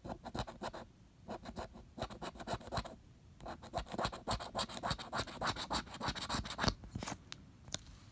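A large coin scratching the latex coating off a paper scratch-off lottery ticket in quick back-and-forth strokes. It comes in short runs with pauses, the longest run in the middle, then a couple of single taps near the end.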